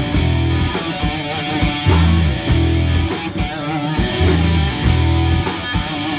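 Live rock band playing an instrumental passage on electric guitar, bass guitar and drums. A low riff repeats about every two and a quarter seconds, each time ending in falling notes, over a steady drum beat.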